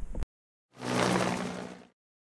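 Electric dirtbike riding over a grass field: rushing wind and tyre noise over a low steady hum, starting about a second in and fading out near the end.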